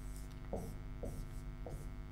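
Faint, steady mains hum, with soft taps and scratches of a pen tip on a digital writing board about twice a second as letters are written.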